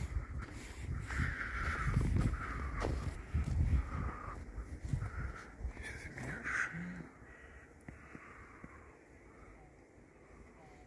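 Crows cawing several times, the calls ending about seven seconds in. Under them is a low rumble on the microphone that fades out at the same point.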